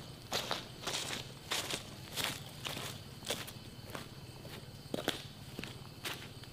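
Footsteps crunching on dry leaf litter over a dirt path, a person walking away at an even pace. The steps come about two a second and grow sparser and fainter.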